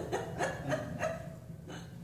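A few short bursts of laughter, spaced irregularly and fading out over the first two seconds, in response to a joke.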